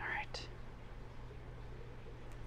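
A brief whisper in the first half-second, then quiet room tone with a steady low hum.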